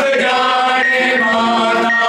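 Male voice chanting a noha, a Shia mourning lament, in long held notes.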